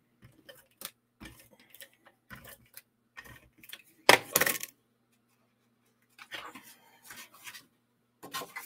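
Small handling noises of cardstock and clear acrylic stamp blocks on a craft mat: scattered light taps, clicks and paper rustles, with one louder clack or scrape about four seconds in. A faint steady electrical hum sits under it.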